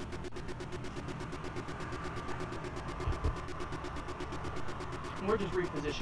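Steady outdoor street background with a vehicle engine running and faint voices, and a short low thump about three seconds in. A man's voice starts up near the end.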